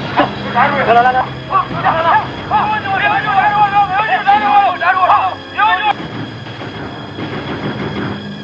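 Several men shouting and yelling in high, strained voices during a staged fistfight. The shouting dies away about six seconds in.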